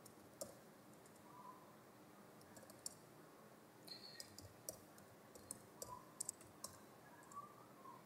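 Faint, scattered keystroke clicks from a computer keyboard as a short command is typed, over near-silent room tone.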